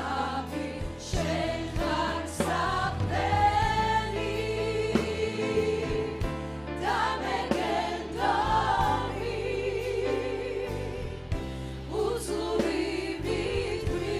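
Church choir singing a gospel worship song, with lead voices on microphones over instrumental accompaniment.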